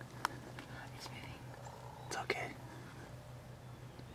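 Quiet whispering voices, with a sharp click about a quarter second in and a low steady hum underneath.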